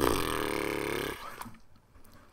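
A man's low, rough vocal sound, like a burp, starting abruptly and lasting about a second.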